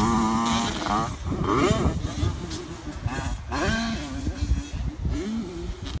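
Motocross dirt bike engine, held at a steady high rev during a jump and then revving up and down several times as the rider lands and rides on.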